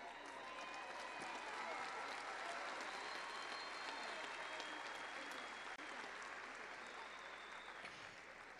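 Large arena crowd applauding and cheering, a dense steady wash of clapping with scattered voices, dying down near the end.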